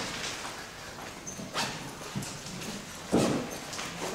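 Low background noise of a meeting room with a few small knocks or handling sounds. The loudest is a dull thump about three seconds in.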